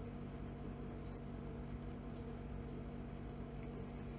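Steady low electrical hum of background room noise, with one faint short tick about two seconds in.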